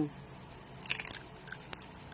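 A person biting into and chewing crunchy roast pork (lechon). A short cluster of crisp crunches comes about a second in, followed by a few smaller chewing clicks.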